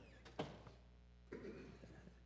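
Near silence: room tone with a low steady hum, a faint click about half a second in and a brief soft noise a little after the middle.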